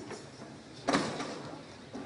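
A single sharp knock or thump about a second in, ringing on briefly in a large echoing hall, over faint room noise.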